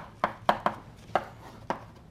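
Chalk writing on a blackboard: a string of sharp, unevenly spaced taps, about eight in two seconds, as the chalk strikes the board with each stroke.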